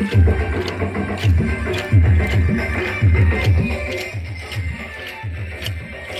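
Kolatam folk music: a steady drum beat with regular sharp clicks of the dancers' wooden sticks striking together, somewhat quieter in the second half.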